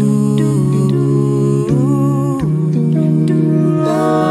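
A cappella vocal music: several voices hum sustained, wordless chords over a sung bass line, moving to a new chord every second or so.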